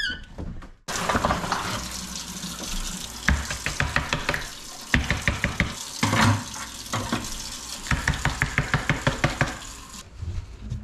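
Tap water running into a kitchen sink while dishes are scrubbed and handled, the scrubbing coming in quick runs of about six strokes a second.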